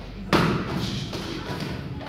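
A gloved punch landing on a padded target: one sharp, loud thud about a third of a second in.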